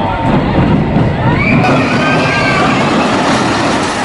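Pinfari steel roller coaster train running along its track, with riders' voices over the rumble.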